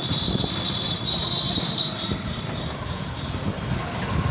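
Town street noise: an uneven low rumble of traffic, with a steady high-pitched whine that fades out about two seconds in.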